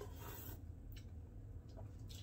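Quiet sipping of hot coffee from a cup, with faint rubbing and a few soft clicks as the cup is handled, over a low steady hum.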